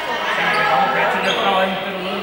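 Indistinct chatter of several people talking at once in a large, echoing sports hall, with a few short thumps in the middle.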